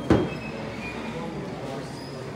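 A single sharp knock just after the start, followed by steady background noise.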